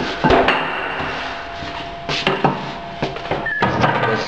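A handful of sharp knocks and clunks at uneven intervals, over a faint steady hum.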